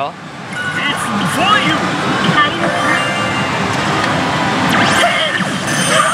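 Loud, steady din of a pachislot hall, with many slot machines' music and electronic effects blending into one wash. Short electronic tones and brief voice snippets from the machines come through on top.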